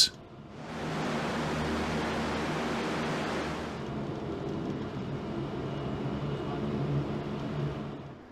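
LCAC hovercraft under way, heard from its cockpit: a steady low hum of its gas turbine engines under a rushing noise. The rushing turns duller about four seconds in.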